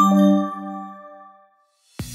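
A single bright chime, a logo-sting sound effect, struck right at the start and ringing out with several tones, fading away over about a second and a half to silence.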